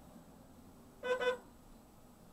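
A car horn sounding one short double toot about a second in.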